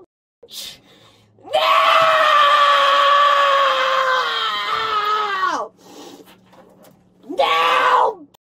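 A woman screaming: one long scream of about four seconds that sinks in pitch as it ends, then a shorter scream near the end.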